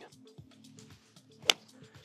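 A nine-iron striking a golf ball on a flighted shot: one sharp click about one and a half seconds in, over quiet background music.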